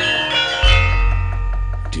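Javanese gamelan ringing out: metal keyed instruments hold and die away, and a deep gong is struck about half a second in, its low hum sustaining.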